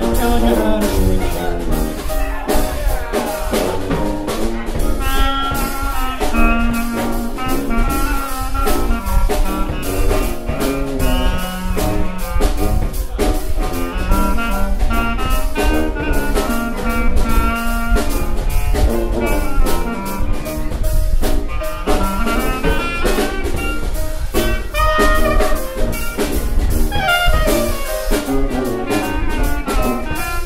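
Traditional New Orleans-style jazz band playing an instrumental chorus with no singing: clarinet playing the lead over sousaphone bass, piano and drum kit.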